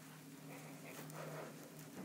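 Faint soft brushing of a makeup brush buffing liquid foundation over the face, over a low steady hum.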